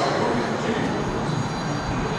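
Steady, even background noise, a low rumble with hiss, and no distinct events.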